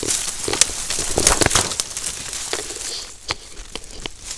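Dry branches and fallen birch leaves crackling and rustling close by as a tangle of deadfall is disturbed. The crackling is dense for the first two seconds or so, then thins to a few sharp snaps.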